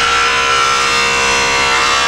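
SawStop table saw running, its blade cutting through a board in a 45-degree miter crosscut: a loud, steady whine with several held tones.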